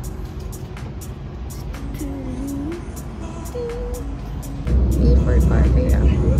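Low rumble of an electric train running, heard from inside the carriage, with faint voices. It grows louder and heavier about three-quarters of the way through.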